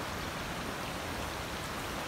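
Steady rush of a shallow, rocky stream running over stones.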